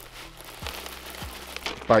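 Bait pellets pattering faintly into a plastic bucket from a bag that crinkles as it is handled, with a few small clicks.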